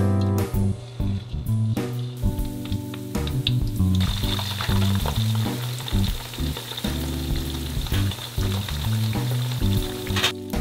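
Battered squid deep-frying in hot oil in a wok, a dense crackling sizzle that starts about four seconds in and carries on steadily, over background music.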